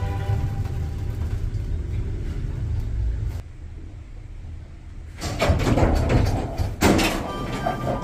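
A low rumble, then after a cut elevator doors sliding, with a run of clunks and rattles from about five seconds in.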